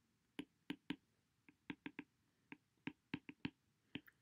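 Stylus tip tapping on a tablet's glass screen while handwriting: a dozen or so faint, irregular clicks.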